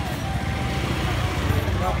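Small motor scooter running at low speed, a steady low rumble, with voices of people close by.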